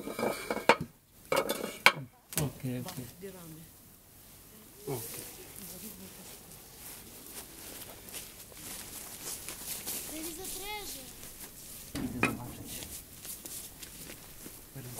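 Bricks and a wooden beam being handled and set down: several sharp knocks and clacks in the first two seconds, then scattered quieter knocks, with another thump about twelve seconds in. A brief pitched call sounds about ten seconds in.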